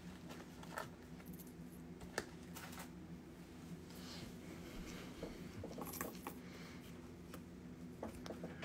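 Quiet handling sounds: a few light clicks and rustles as small pendants and bagged stones are moved about on a table, over a steady low hum.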